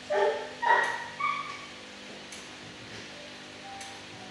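A dog barking three times in quick succession.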